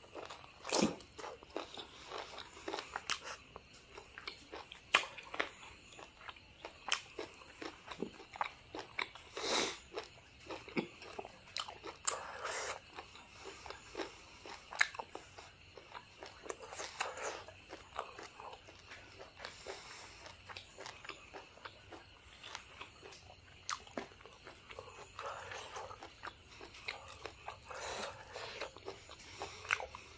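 Biting and chewing meat off a beef bone, close to the microphone, with irregular sharp clicks and short bursts of chewing noise.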